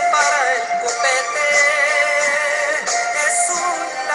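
Music: a song with a sung voice over instrumental backing.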